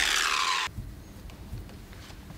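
Electric car polisher's whir fading and falling in pitch as it winds down, cut off abruptly under a second in; then quiet room tone with a faint low hum.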